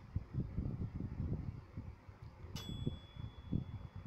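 An appliance's timer beep about two and a half seconds in, a steady high tone lasting just over a second, signalling that the food is done. Faint low rumbling runs underneath.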